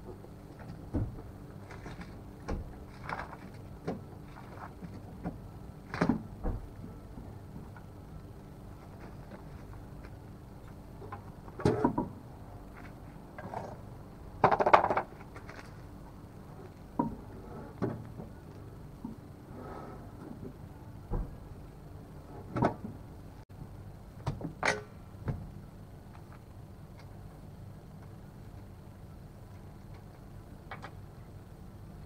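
Irregular knocks and clunks of a car wheel being handled on and off its hub during a wheel change, with the loudest a clatter about halfway through lasting about a second.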